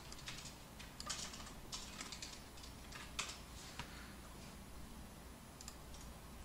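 Faint computer keyboard and mouse clicks: irregular single keystrokes, most in the first four seconds, then sparser, over a low steady hum.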